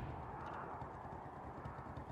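Faint low rumble inside a car cabin, slowly dying away.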